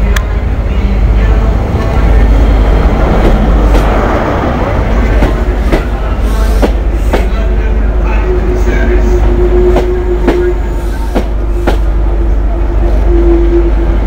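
First Great Western HST (InterCity 125) passing close along the platform: a heavy steady rumble from the diesel power car and coaches. From about five seconds in, the coach wheels clack over the rail joints in regular pairs, with a steady hum running through the second half.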